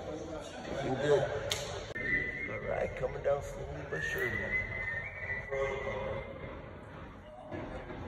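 Indistinct voices of workers talking, with a steady high tone that sounds from about two seconds in to about six seconds in and steps up in pitch partway, and a single sharp click about one and a half seconds in.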